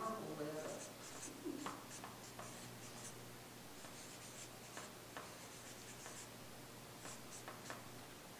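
Marker pen writing on a paper flip chart pad: faint, short scratchy strokes coming in irregular bursts, with a few light ticks.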